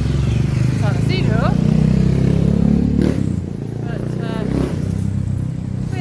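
A motorcycle engine running as it passes along the street, swelling over the first three seconds and dropping away suddenly about three seconds in, with steady town traffic hum under it.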